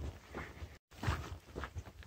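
Faint footsteps of a hiker walking on a dusty dirt-and-gravel trail, a step about every half second, with the sound dropping out completely for a moment about a second in.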